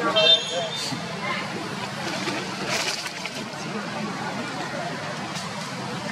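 Indistinct human voices over steady outdoor background noise, with a brief high squeak in the first half-second.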